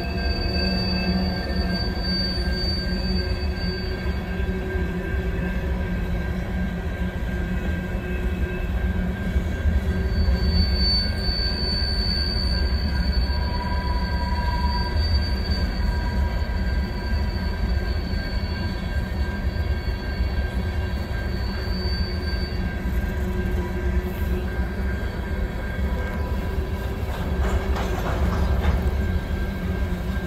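Empty covered hopper cars of a freight train rolling past with a steady low rumble. The wheels squeal in a thin high tone near the start and again through a long stretch from about a third of the way in.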